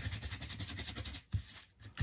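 Cheap paintbrush scrubbing and dabbing acrylic paint onto thick cardstock, an uneven dry rubbing scratch of bristles on paper, with one short knock a little past halfway.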